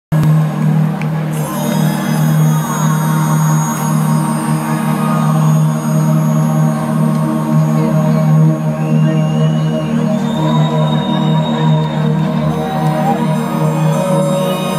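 Live synthesizer drone heard through a large concert PA: a steady low note with higher sustained tones holding and sliding above it, and no drums.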